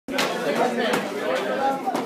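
Several people talking and chattering at once in a large hall, with a couple of sharp clicks in the first second.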